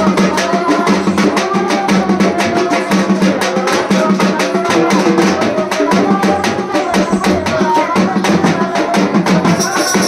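Loud festival drumming on a large frame drum, a fast and even beat, with other music sounding along with it.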